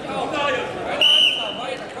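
A referee's whistle blows once, short and high, about a second in, signalling the wrestlers to start, over voices and chatter.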